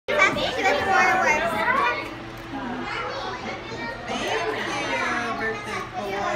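Children's voices chattering, high-pitched and overlapping, loudest in the first two seconds.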